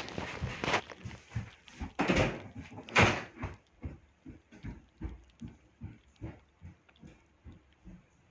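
Rustling and knocks of the phone being handled and set down against fabric, then footsteps walking away, about two or three a second, growing fainter.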